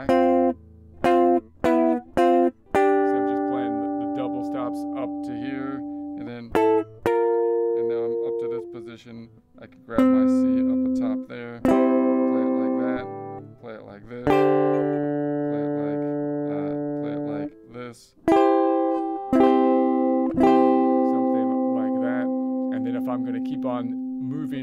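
Electric guitar playing double stops from the C major scale. There are a few short, choppy two-note stabs at the start, then a series of two-note pairs, each left ringing for one to three seconds as the player walks through the scale shape.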